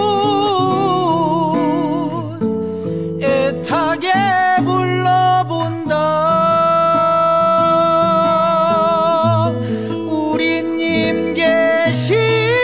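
A recorded song: a singer holds long notes with wide vibrato over guitar accompaniment, with one note sustained for several seconds in the middle.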